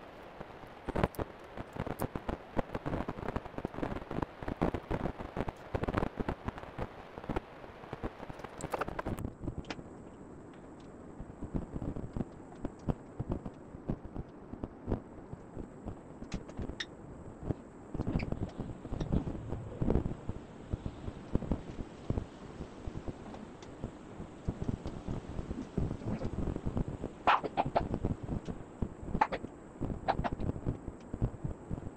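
Handling noise from fitting pads and straps onto an electric unicycle: rustling, crackling and many small knocks and clicks, busiest in the first nine seconds, then sparser knocks with a louder cluster near the end.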